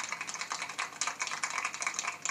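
Rapid, dense clatter of many small clicks, like keys being typed.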